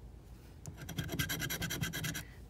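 Scratching the coating off a New York Lottery Cash Lines scratch-off ticket with a scratcher tool: a fast run of short rubbing strokes that starts about two-thirds of a second in.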